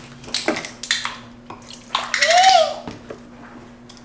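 A plastic water bottle cap twisted open with a few short clicks, then a drink poured from a jug into a glass for about a second, loudest about two seconds in, its pitch rising and falling as it fills.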